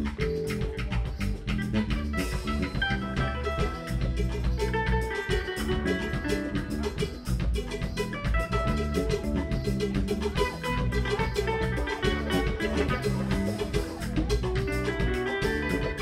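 A band playing an instrumental passage: a kora plucks a run of bright, quick notes over bass guitar, drum kit and hand percussion, with a steady beat.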